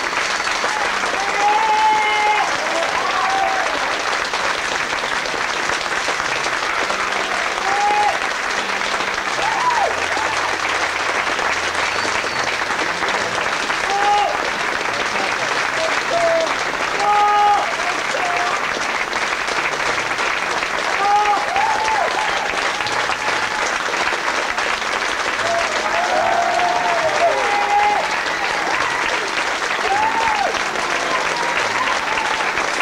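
Theatre audience applauding steadily, with scattered whoops and cheers rising and falling above the clapping every few seconds.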